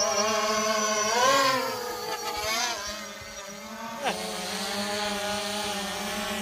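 Quadcopter drone's propellers buzzing steadily, the pitch rising and falling briefly about a second in as the motors change speed.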